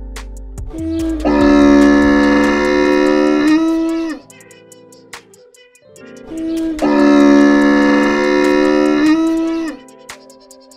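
A camel's long, drawn-out call, played twice, each time for about three seconds, over quiet background music.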